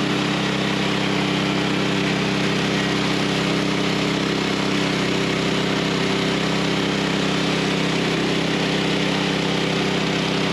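Woodland Mills HM130max portable bandsaw mill cutting through a log: its Kohler gas engine runs steadily under load while the band blade saws, a loud, even, unbroken machine noise.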